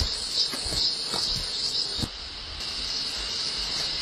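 A steady, high-pitched insect chorus buzzes without a break and cuts off at the very end. A few soft low thumps in the first half fit footsteps on rock.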